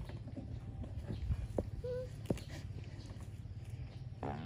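Calf grazing: a few sharp rips of grass being torn, over a steady low rumble. A short chirp about two seconds in.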